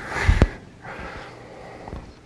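A short, noisy breath close to the microphone, like a sniff, with a soft low thump near its end, then a fainter breath about a second in.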